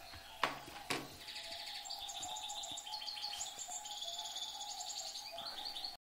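Birds chirping: rapid, repeated trains of high notes carry on steadily after about a second in. Two sharp clicks come within the first second, and a faint steady tone runs underneath.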